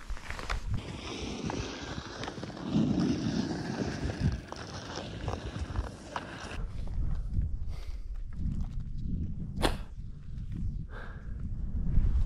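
Wind buffeting the action-camera microphone, with the scrape and crunch of touring skis moving over snow. A single sharp click about ten seconds in.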